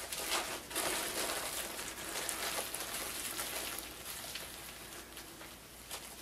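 Light crinkly rustling and patter of loose artificial snow flakes being pinched out of a plastic bag and sprinkled onto paper, fading toward the end.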